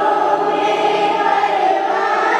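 Urdu devotional salaam being sung, the voice drawing out long held notes with no break.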